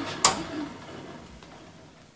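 A single sharp click about a quarter second in, followed by faint room tone.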